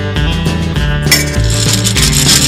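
Sound effect of a coin dropping into a gumball machine: a metallic rattling clatter starting about a second in, over background music.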